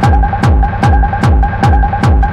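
Hard techno track at 150 BPM: a heavy kick drum lands on every beat, five in two seconds, each one dropping in pitch. Under it runs a steady high synth tone with a fast flutter, and sharp high hits fall between the kicks.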